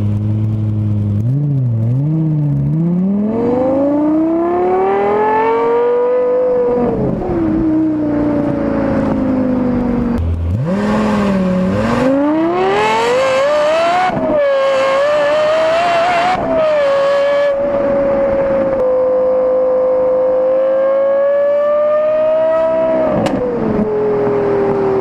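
Lexus LFA's V10 engine: a low idle with two quick blips, then a long rising rev that falls back, another dip to low revs and a second climb. From about the middle it holds a high, nearly steady pitch, and drops away near the end.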